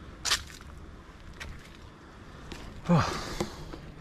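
Heavy breathing of a person climbing a long flight of steps, out of breath: a sharp puff of breath about a quarter second in, then a voiced sigh that falls in pitch about three seconds in, over faint footfalls.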